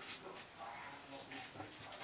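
Merkur slant safety razor scraping through lathered stubble on the cheek in a few short strokes.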